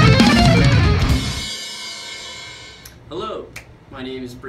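Heavy metal song with guitar and live drum kit, stopping about a second in; the cymbals and bell ring on and fade away. A voice comes in briefly near the end.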